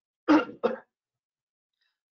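A man clears his throat in two quick bursts, close together in the first second.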